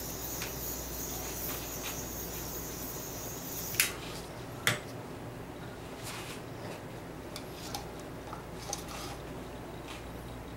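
Handheld butane torch hissing as its flame is played over freshly poured epoxy resin to pop surface bubbles. The hiss cuts off with a sharp click about four seconds in, and a second click follows a second later. A few faint ticks come after.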